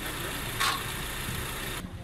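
A vehicle engine idling with a steady low rumble, and one short, sharp high sound about half a second in.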